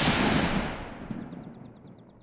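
Outro title sound effect: a loud boom-like hit that dies away slowly over about two seconds, with a fast, high ticking coming in over its second half.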